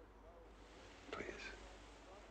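Near silence: faint room tone, with one softly whispered word about a second in.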